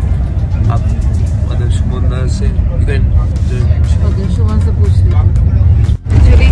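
Steady low rumble of a bus heard from inside the passenger cabin, with faint voices of people talking over it.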